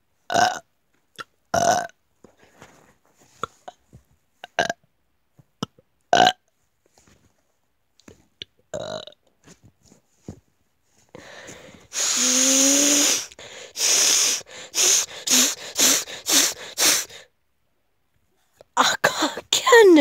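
A boy burping: several short burps a second or two apart, then one long drawn-out burp about twelve seconds in, followed by a quick run of short breathy bursts.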